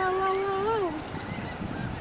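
A person's voice holding one long, drawn-out exclamation on a single note, which slides down and stops about a second in. After it there is only faint low background noise.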